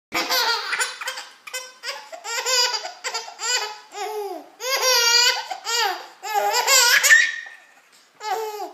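A six-month-old baby laughing in a string of high-pitched bursts, each rising and falling, with short breaths between them, trailing off near the end.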